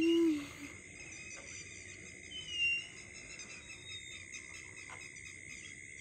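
Steady chirring of night insects such as crickets, continuous throughout, with one short high chirp about two and a half seconds in. A voice finishes saying 'Year' at the very start.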